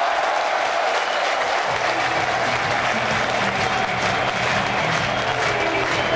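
Football stadium crowd applauding and cheering a goal. A low steady drone joins the noise about two seconds in.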